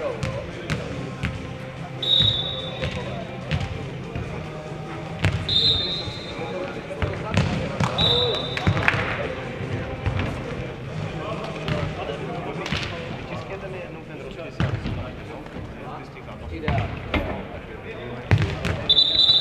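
Futnet ball being kicked and bouncing on a hard indoor court, with sharp impacts scattered through the rally and echo from the large hall. A few short, high-pitched squeaks cut in about two, five and eight seconds in.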